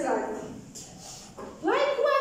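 Young children's voices: one trails off at the start, then after a quieter moment a high child's voice rises sharply into a drawn-out call about one and a half seconds in.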